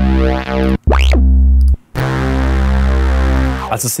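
Bass presets of Ableton Live's Analog software synthesizer being previewed one after another: a deep, sustained synth bass note that cuts off abruptly under a second in, a second note that opens with a quick upward sweep and stops just before two seconds, then a longer third note that fades out near the end.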